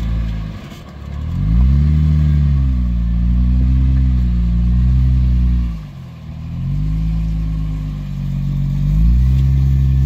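Jeep Wrangler engine revving under load as it crawls up over a rock ledge. The revs rise and ease several times, dip briefly about six seconds in, then climb again near the end.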